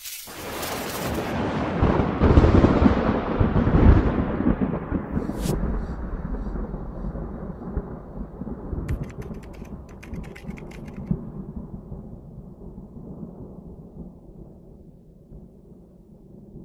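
Thunder sound effect: a crack followed by a long rolling rumble that swells over the first few seconds and slowly dies away, with a short burst of crackling around the middle.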